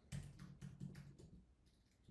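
Faint computer keyboard typing: a quick run of light keystrokes while an amount is typed in, stopping about a second and a half in.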